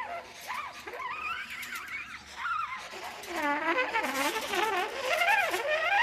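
Free-improvised horn playing: one wavering line of sliding, smeared pitches and cries, growing louder about halfway through.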